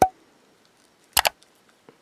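A cured UV-resin cabochon being pushed out of a soft silicone mold by gloved fingers: a sharp click at the start, then a quick double click a little over a second in as the piece comes free.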